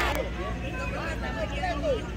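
Baseball spectators and players talking and calling out, many voices overlapping, over a steady low hum. A louder burst of shouting cuts off just after the start.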